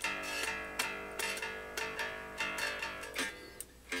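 1976 Gibson Thunderbird electric bass being played by hand: a run of plucked notes, a few per second, with a short gap near the end.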